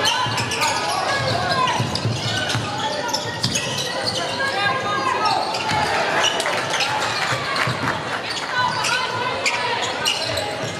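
A basketball bouncing on a hardwood court during play, with scattered sharp knocks and voices calling out, echoing in a large indoor hall.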